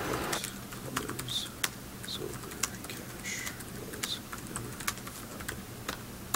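Typing on a computer keyboard: irregular keystroke clicks, starting about half a second in as a steady outdoor hiss cuts off.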